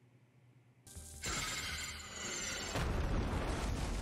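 Movie-style explosion sound effect from a TV action scene: a loud blast with a heavy low rumble that starts about a second in, goes on for about three seconds, and stops suddenly at the end.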